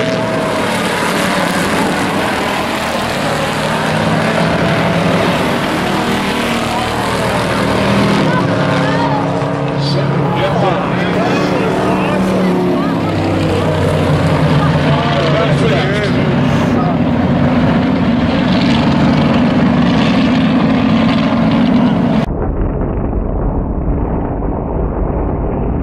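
Several hobby stock race cars' engines running on the track, rising and falling in pitch as the cars accelerate and lift, with a sudden change in sound about two seconds before the end.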